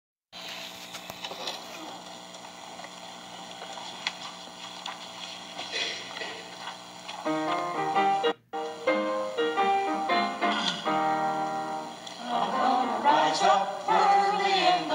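Music from a church choir set: faint steady held tones at first, then from about halfway an instrumental introduction of sustained chords moving note by note. The choir starts singing near the end. The sound cuts out completely for a moment a little past halfway.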